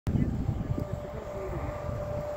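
Strong wind buffeting the microphone, loudest in the first second, over a steady machine drone with a thin high whine running through it.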